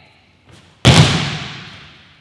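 One sudden loud thud of several trainees landing together on judo mats, a little under a second in, ringing on and fading for more than a second in the echoing hall.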